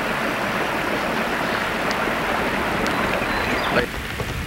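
Steady running noise of a small fishing boat under way, its motor droning under wind and water rush on the microphone; it cuts off abruptly near the end.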